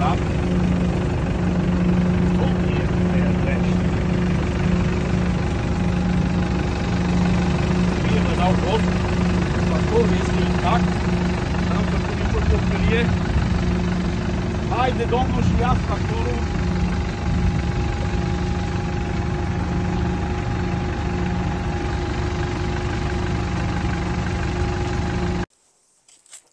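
Small farm tractor's engine running steadily at constant speed with a low hum, cutting off abruptly near the end.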